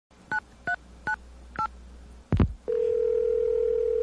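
Telephone touch-tone dialing: four short two-tone beeps, then a click on the line, and a steady ringback tone starting about two and a half seconds in.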